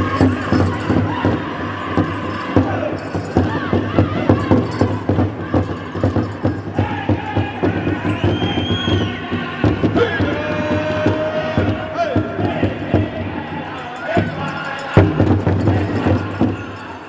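Powwow drum group singing over a steady, fast beat struck together on a large powwow drum, accompanying a Men's Traditional dance song. A brief high arching whistled tone sounds about eight seconds in, and a single heavy drum strike stands out near the end.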